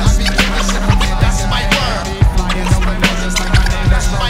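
Instrumental hip hop beat: regular drum hits over a steady bass line, with sliding turntable scratches over it.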